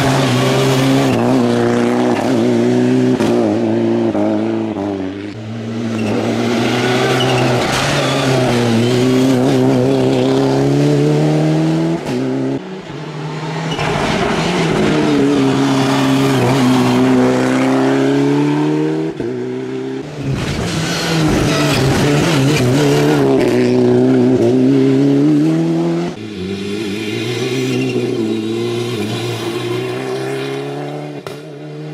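Ford Fiesta R5 rally car's turbocharged 1.6-litre four-cylinder engine driven hard through corners, its revs falling and climbing again and again as it brakes, shifts down and accelerates away. It is heard in several short passes that cut one into the next.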